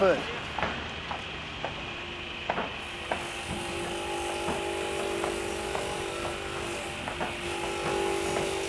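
Masonry table saw with a noise-damped diamond blade cutting a paving block. It runs as a steady, fairly quiet hum over a low hiss, and about three seconds in a steady whine sets in as the blade bites.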